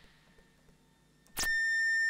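Moog modular synthesizer: near silence, then about a second and a half in a click as a steady, high, beeping tone with several overtones starts and holds.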